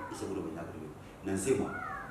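A man speaking in an animated preaching voice, with a high gliding tone sliding down in pitch at the start and again near the end.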